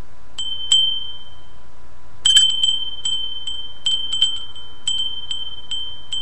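A small high-pitched metal chime struck again and again at one pitch, each strike ringing briefly: two strikes under a second in, a quick cluster of strikes a little after two seconds, then single strikes about every half second. A faint steady tone runs underneath.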